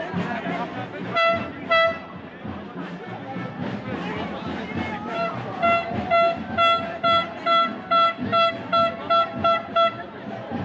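A single-pitched horn sounding in short blasts: two toots about a second in, then a run of about ten quick toots, a little over two a second, through the second half. Crowd chatter runs underneath.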